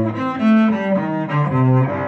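Cello playing a short blues lick: a run of low notes, one after another, each held briefly.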